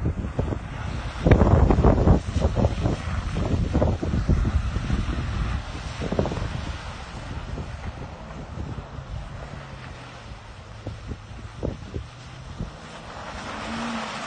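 Wind buffeting the microphone in irregular gusts, strongest a little over a second in, over the faint, distant engine of a Toyota Tundra pickup driving through mud.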